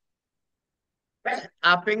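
Dead silence for just over a second, then a man's voice resumes speaking in Telugu.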